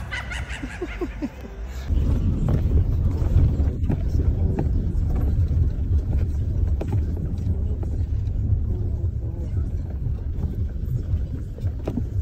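Low rumble of a car's cabin noise, the engine and road sound heard from inside, starting suddenly about two seconds in and running on steadily.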